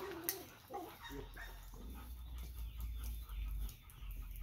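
A young retriever whimpering and making short vocal sounds while being led on a check cord. A low rumble sets in about a second in.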